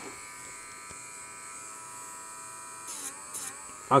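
Dremel rotary tool with a very fine sanding disc running with a steady high whine. About three seconds in, its pitch sags briefly with a short scratchy sound as the disc sands the motherboard surface to show whether a copper trace under the solder mask is broken.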